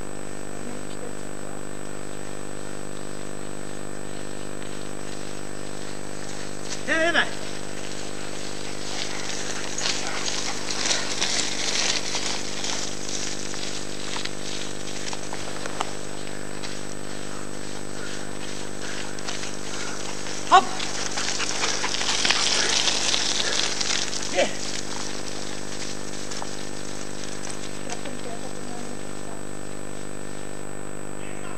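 Steady hum and high whine of an old camcorder recording, with a short shout about seven seconds in and brief calls near twenty and twenty-four seconds. Two stretches of hissing rustle come around ten to thirteen and twenty-two to twenty-five seconds in.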